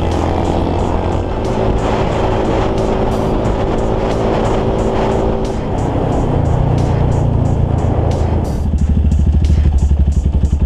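Small motorcycle engine running on the move, with a hip-hop instrumental beat playing over it. A low, pulsing throb sets in near the end.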